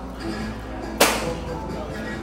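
Background music and voices of people talking in a restaurant dining room, with one sudden, loud, sharp noise about a second in that dies away over half a second.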